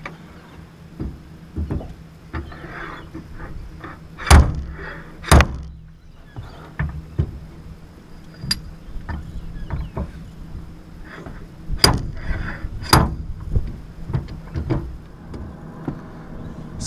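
A slide hammer hooked on the rim of a corrosion-seized boat steering wheel, its sliding weight driven against the stop: four hard metal blows in two pairs about a second apart, with lighter clicks and rattles between. The wheel is stuck fast on the Teleflex helm shaft and does not move.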